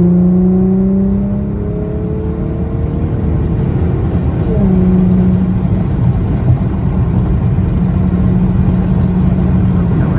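A car's engine heard from inside the cabin at highway speed over steady road rumble. The engine note climbs slowly, drops suddenly at a gear change about four and a half seconds in, and then holds steady.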